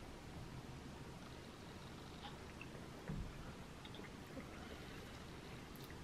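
Faint sounds of a man drinking from a plastic bottle over quiet room tone, with one soft gulp about three seconds in.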